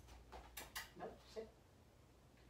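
Faint taps and scuffs of a puppy moving about and settling down on a foam mat, with a brief faint murmur about a second in.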